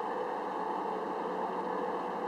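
A steady mechanical hum with an even hiss, unchanging, with no distinct events.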